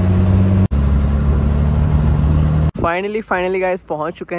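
A bus engine running steadily at close range, with a low even hum. It breaks off sharply a little under a second in and resumes, then stops abruptly near three seconds, when a man starts talking.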